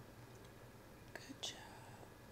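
Very quiet room with two short, soft breathy mouth sounds, like a whisper, about a second and a half in.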